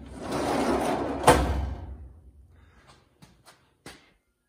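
A metal card file cabinet drawer running smoothly on freshly relubricated slides and stopping with a sharp knock about a second in, followed by a few faint clicks.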